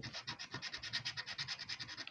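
Plastic scratcher scraping the coating off a paper lottery scratchcard in quick, even back-and-forth strokes.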